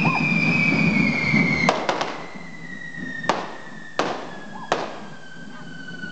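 Festival fireworks going off: a long whistle falling slowly in pitch over a rushing hiss, with sharp firecracker bangs, a quick group of three about two seconds in and then single bangs roughly every second.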